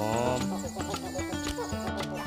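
Background music with steady held notes and a regular beat. A man's voice trails off on the last word of a goodbye in the first half second.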